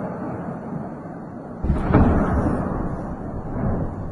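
An explosion: a sudden boom about one and a half seconds in that rumbles and fades over the next two seconds, with a smaller swell of rumble near the end, over a steady low background rumble.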